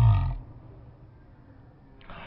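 A man's voice holding one long drawn-out vowel, cut off about half a second in, followed by faint low background noise.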